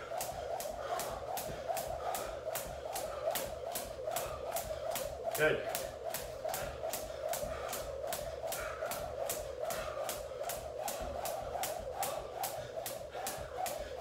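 Jump rope slapping a wood floor in a steady rhythm, about three ticks a second, over a steady humming tone.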